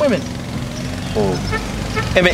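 Low rumble of a vehicle engine building up, with a brief voice about a second in and faint short high chirps.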